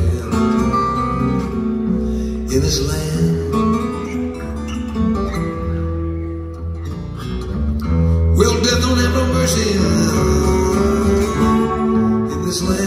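Live acoustic guitar picking a slow blues over a hollow-body bass guitar, with deep, sustained bass notes under the guitar lines.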